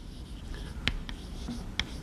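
Faint scratching of writing on a board, with two sharp taps, one about a second in and one near the end.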